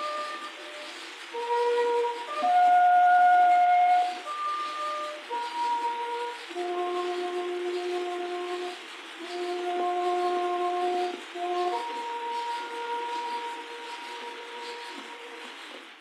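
A lone brass horn playing a slow bugle-style call. It plays a few short notes, then long held notes, and the last note fades away. The acoustic 78 rpm record adds a steady surface hiss under the notes.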